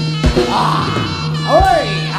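Live jaranan gamelan accompaniment: sustained tones and a few sharp drum strokes, with a high melody line that swoops up and down in pitch.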